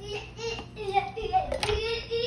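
A young child's high-pitched voice, talking or vocalising in the background, with a brief knock about one and a half seconds in.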